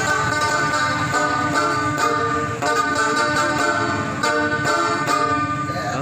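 Small banjo with a rusty metal drum body strummed in a steady rhythm, playing a Christmas carol tune.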